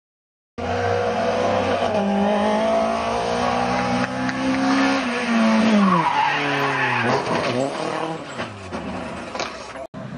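Rally car engine held at high revs with a steady note, then falling in pitch as the driver lifts off and brakes, followed by several quick rises and falls in revs as the car passes close by. The sound starts abruptly about half a second in and cuts off suddenly just before the end.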